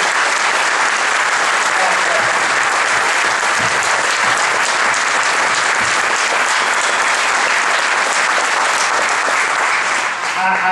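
Audience applauding in a long, steady round of clapping.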